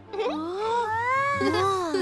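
A cartoon character's long, drawn-out vocal sound that slides up and then down in pitch, like a wavering exclamation.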